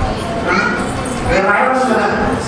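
A man's voice preaching through a handheld microphone in a hall.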